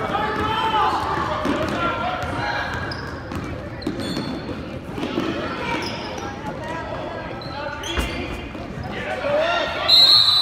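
Basketball dribbling and bouncing on a hardwood gym floor during a youth game, with players' and spectators' voices echoing in the large hall. A referee's whistle starts right at the end.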